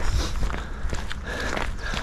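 Footsteps of two people walking over grass and gravel, with a steady low rumble underneath.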